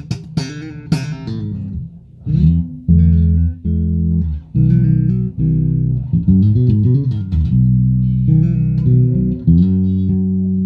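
Ernie Ball Music Man StingRay 5HH electric bass played through an amp: a quick run of short, sharp plucked notes, then held notes and chords left to ring, with a few brief breaks.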